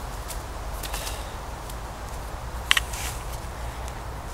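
Low, steady rumble of wind on the microphone in woodland, with a few soft scuffs and rustles. A sharp double click about two-thirds of the way through is the loudest sound.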